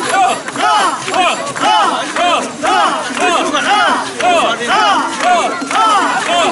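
Mikoshi bearers chanting in unison as they carry a portable shrine, a short rising-and-falling call repeated about twice a second by many voices at once.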